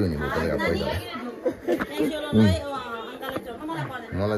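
People talking, with a man's voice close to the microphone.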